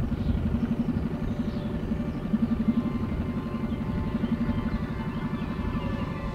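Small boat outboard motor running steadily under way, a low even rumble with rapid regular pulsing.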